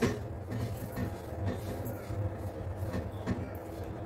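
Steady low background rumble with a few faint light taps as whole spices are dropped from a wooden spice tray into a steel blender jar.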